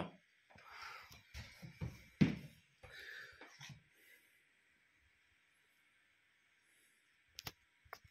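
Faint handling noise: irregular rustling and knocks during the first few seconds as a handheld thermal camera is moved. Then quiet with a faint steady hiss, and two sharp clicks near the end.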